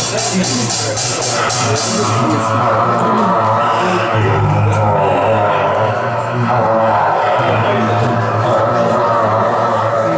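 Live rock band playing: bass and guitars over drums, with a steady cymbal beat of about three strikes a second that drops out about two seconds in.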